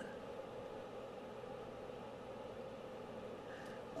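Quiet room tone: a faint steady hiss with a low hum and no distinct event, apart from a small tick at the very end.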